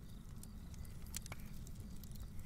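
Faint background ambience of a crackling campfire: a steady low rumble with sparse, irregular crackles and pops.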